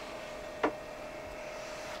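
A faint steady hum and hiss of room tone, with one short, sharp click about two-thirds of a second in.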